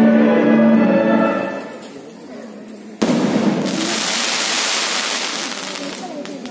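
Music with long held chords fades out. About three seconds in, a sudden loud bang sets off a long rushing roar that slowly dies away, a blast-like stage sound effect.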